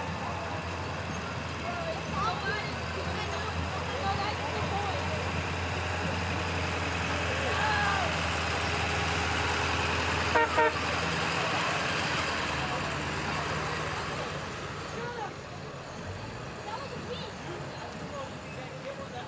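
A pickup truck towing a large trailer passes slowly with a steady low engine hum over crowd chatter. About ten seconds in, its roof-mounted horns give two quick toots, and the engine sound then fades as it moves on.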